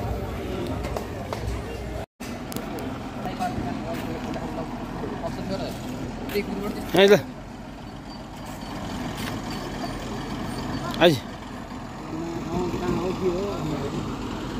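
Road ambience with a vehicle engine running and faint voices. There is a short gap in the sound about two seconds in. Two short loud calls from a man's voice come about seven and eleven seconds in, the second sliding down in pitch.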